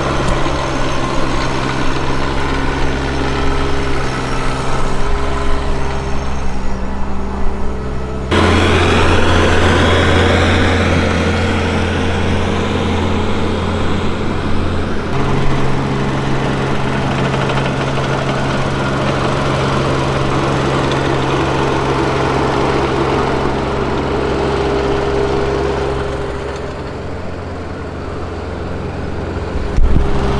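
Bobcat E20 mini excavator's diesel engine running steadily as the machine travels on its tracks. Its pitch and tone shift abruptly about eight seconds in and again about fifteen seconds in, and it grows quieter near the end.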